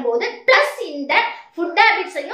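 A woman talking in Tamil in short, quick phrases, with a brief pause about one and a half seconds in.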